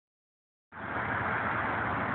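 Steady rushing outdoor background noise from a rooftop, starting abruptly under a second in.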